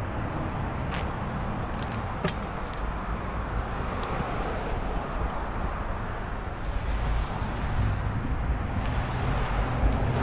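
Steady rush of road traffic passing on a nearby highway, a continuous low rumble of tyres and engines, with a couple of faint clicks about a second and two seconds in.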